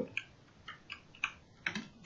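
Computer keyboard typing: several separate key taps, spaced irregularly, as text is entered in a code editor.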